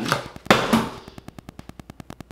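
A sudden crackly burst, then a fast, even train of faint clicks, about a dozen a second: a fault in the audio recording that the uploader could not explain or remove.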